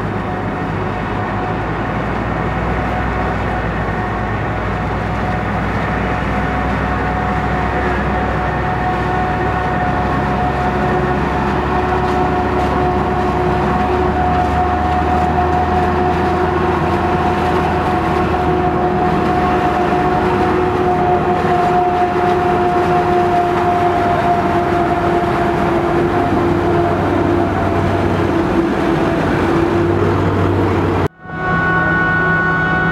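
Claas Jaguar 970 self-propelled forage harvester chopping maize, its V12 engine and crop flow running steadily at full work with a high steady whine over the machinery noise, together with the engine of a Fendt 824 Vario tractor travelling alongside with the silage trailer.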